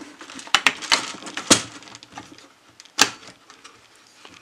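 Plastic and metal clicks and knocks from an A&K M249 airsoft gun being handled as its box magazine is fitted into the feed. There are a few sharp clicks, the sharpest about a second and a half in and again about three seconds in.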